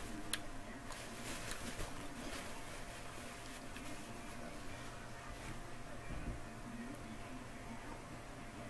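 Soft rustling and a few faint clicks from a paper napkin wiping up spilled milk, over a steady faint hum in a small room.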